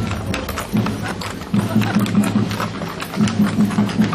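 Many horses' shod hooves clip-clopping on an asphalt street at a walk, an uneven patter of clicks from several horses at once. Music with a low, pulsing beat plays behind them.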